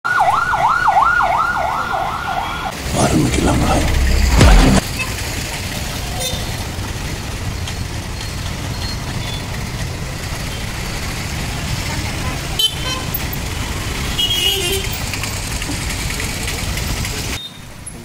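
Ambulance siren yelping rapidly, about four rises and falls a second, for the first couple of seconds. Then a loud deep vehicle rumble until about five seconds in, followed by steady street traffic noise of engines and tyres.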